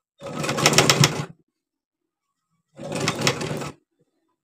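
Salika sewing machine stitching in two short runs of about a second each, with a pause between, as gathered fabric is sewn in place.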